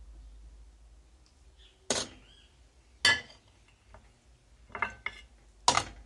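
Sharp metallic clinks of a utensil striking a stainless steel pot, four or five strikes about a second apart, starting about two seconds in.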